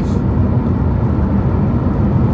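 Steady low road and engine noise inside the cabin of a car travelling at speed.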